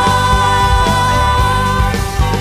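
Live worship band playing a song with a steady drum and bass beat, a woman singing lead into a microphone and holding one long note until near the end.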